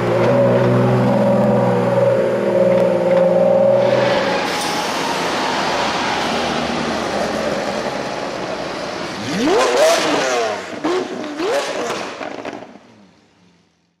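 A supercar engine runs steadily at first, then is revved sharply a few times, its pitch sweeping up about ten seconds in, before fading out near the end.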